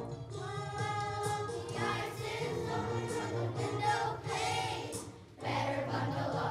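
Children's choir singing a song together over instrumental accompaniment, with a brief lull about five seconds in before the singing picks up again.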